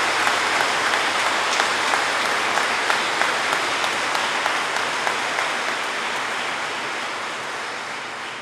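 Audience applauding, many hands clapping at once, slowly dying down over the seconds.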